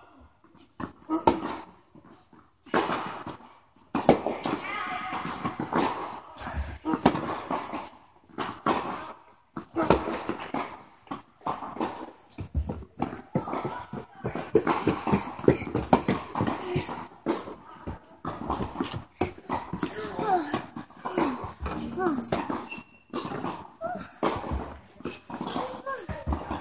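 Voices talking almost without pause, over the sharp hits of tennis balls struck by racquets and bouncing on the court during a rally.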